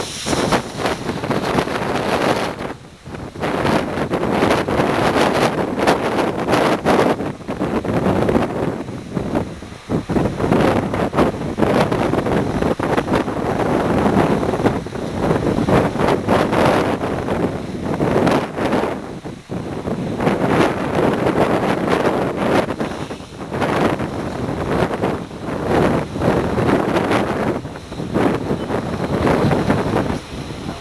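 Wind buffeting the camera microphone: a loud rushing that rises and falls in gusts, with brief lulls about three, ten and nineteen seconds in.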